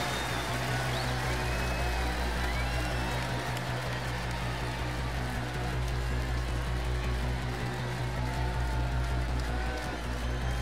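Live pop-rock band music from a concert stage, with sustained low bass notes under a dense, steady mix and the crowd faintly audible.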